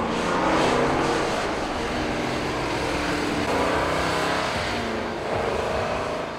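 1968 Dodge Charger's V8 engine running under light throttle as the car drives and turns, the exhaust note rising and falling with the revs.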